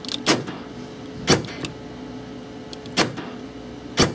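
Truck's power door lock actuators clunking four times as the door lock switch is worked, the switch grounding the pull-down signal wire to command the locks. A steady faint hum runs underneath.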